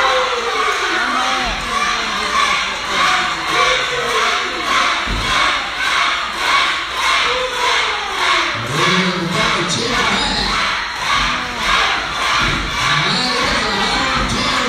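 Small live crowd at a pro wrestling show cheering and shouting, children's voices among them, with steady rhythmic clapping at about two claps a second. A couple of dull thuds come through, about a second and a half and five seconds in.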